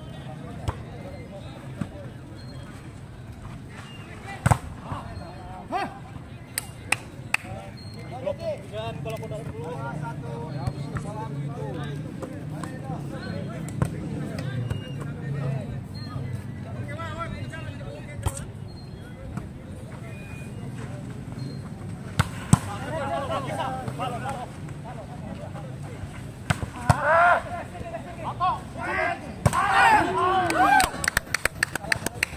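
Volleyball being played: sharp slaps of hands striking the ball every few seconds, over the chatter of players and spectators. The voices swell into louder calls near the end.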